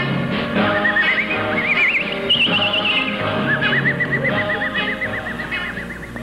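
A pop song playing, a band backing under a high lead voice that wavers with a wide, fast vibrato, climbing and then holding one long wobbling note near the end as the song finishes.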